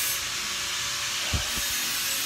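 A steady, fairly loud hiss, with a few dull low thumps about one and a half seconds in.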